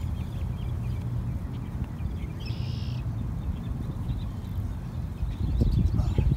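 Wind buffeting the microphone as a steady low rumble, with one short bird call about two and a half seconds in.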